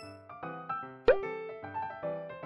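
Light background keyboard music playing note by note, with a single short pop that rises in pitch about a second in.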